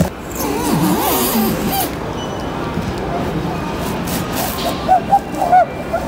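Faint, indistinct voices over a steady background hiss, with cardboard space-heater boxes being handled and shifted on a store shelf.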